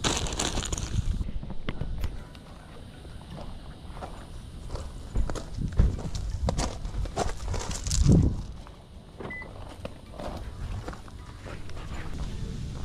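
Footsteps crunching on loose gravel, uneven, after a couple of seconds of bag and gear rustling at the start, with a louder bump about eight seconds in.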